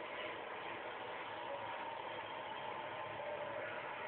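Steady hiss of a low-quality room recording, with faint, muffled, indistinct sound from a television playing across the room.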